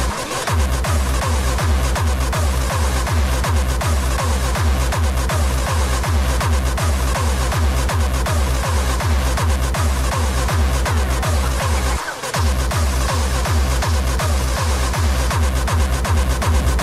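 Hard dance music from a continuous DJ mix: a steady, fast, heavy kick drum under dense synth layers. The kick drops out briefly right at the start and again about twelve seconds in.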